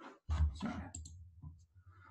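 A run of clicks and knocks close to the microphone over a low rumble, starting about a quarter second in and fading out just before speech returns.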